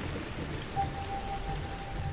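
Steady rain sound effect, an even hiss with a low rumble beneath, joined about three-quarters of a second in by a single thin held tone from the music bed.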